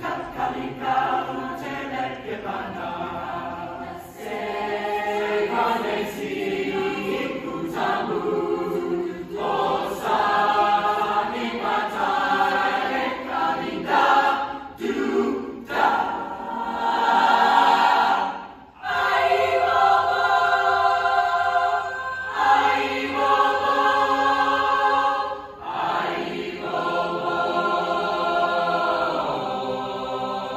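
A mixed choir singing in harmony: long held chords in phrases separated by short breaks, with a near stop about two-thirds of the way through.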